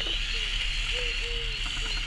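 LEGO Technic trial truck's XL electric motor and gear train running with a steady high whine as the truck drives, with faint voices in the background.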